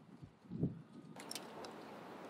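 Faint handling of a wire and an insulated crimp connector: a soft bump, then a few small sharp clicks over a light hiss in the second half.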